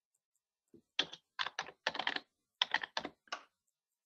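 Typing on a computer keyboard: about a dozen quick keystrokes in short runs, starting about a second in.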